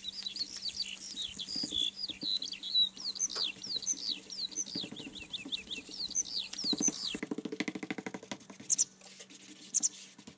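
Small birds chirping in a quick run of short, high, falling chirps over a faint steady hum. About seven seconds in the chirps stop and a flat brush scrubs acrylic paint onto canvas in rapid scratchy strokes.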